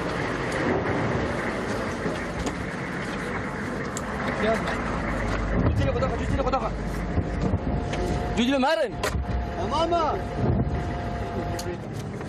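A vehicle engine running with a steady rumble, heard from inside the vehicle. Men's voices call out loudly twice in the later part, and someone laughs near the end.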